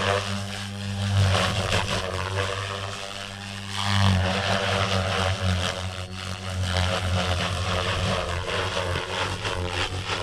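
Electric Goblin RAW 500 RC helicopter's rotor blades and Xnova motor running at high headspeed, with a steady low drone under a rushing blade noise. The sound swells and fades as it is flown through aerobatic manoeuvres, loudest about a second in and again at about four seconds.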